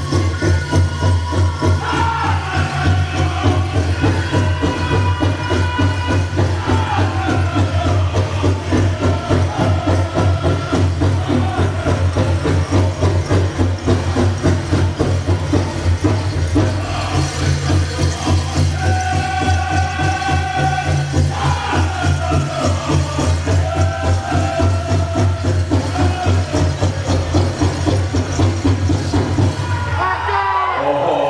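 Powwow drum group singing to a fast, steady beat on a large shared drum, the voices rising and falling in high-pitched phrases, with the jingling of dancers' bells mixed in.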